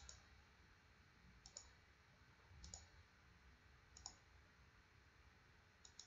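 Faint computer mouse clicks, about five over the few seconds, some in quick pairs, against near silence.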